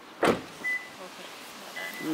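A car door being shut: one short, loud thud about a quarter second in, followed by a brief high beep.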